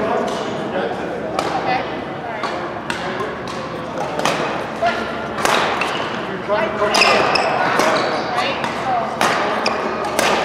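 A badminton rally in a large indoor hall: rackets strike the shuttlecock again and again in sharp cracks, among footsteps and shoe squeaks on the court floor.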